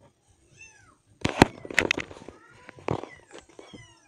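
Domestic cat giving a short meow, then a run of brief falling calls near the end. Loud knocks and rubbing from the phone being handled against the cat come about a second in and again later, and are the loudest sounds.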